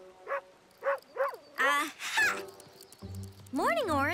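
Soft background music under a string of short wordless vocal sounds that rise and fall in pitch, ending in a longer swooping call near the end.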